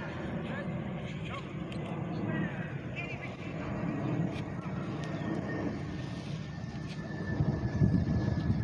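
Faint, indistinct voices over a steady low outdoor rumble.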